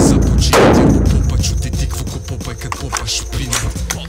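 Two shots from an AR-style rifle about a second apart, each ringing on in the concrete range, over background hip-hop music with a steady beat.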